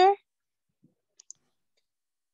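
A spoken question trails off at the very start, then near silence with two faint, quick clicks a little over a second in.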